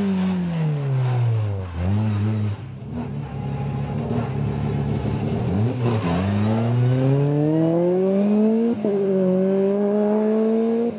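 A Renault Twingo rally car's engine drops in revs as the car slows for a corner and runs low and uneven for a few seconds. It then revs up steadily as the car accelerates away, with a quick upshift about nine seconds in.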